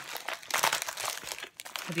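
Metallic plastic mailer bag crinkling and crackling in quick, irregular rustles as it is pulled open by hand.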